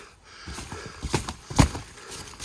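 Snow crunching as gloved hands dig it away from a tent wall, with a few short thumps, the loudest about one and a half seconds in.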